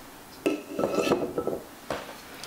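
Kitchen knife clinking against a bowl while rhubarb stalks are cut, with a short ringing tone after the first clink about half a second in, a run of small irregular knocks, and a sharp click near the end.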